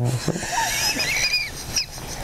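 A man laughing, with high, wavering pitch.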